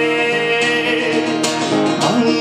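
Acoustic guitar strummed, its chords ringing as the accompaniment to a live song.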